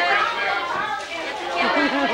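Several people talking at once: overlapping, indistinct chatter of a family gathering.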